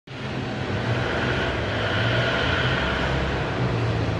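Corrugated cardboard production line (corrugator) running, with the board moving on its conveyor belts: a steady machine noise with a low hum.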